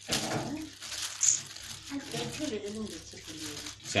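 A plastic oven bag crinkling briefly as it is handled at the start, followed by quiet talking.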